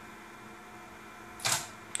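Canon EOS 7D's shutter and mirror firing once, sharply, about one and a half seconds in, one frame of a four-shot sequence triggered remotely by an Arduino.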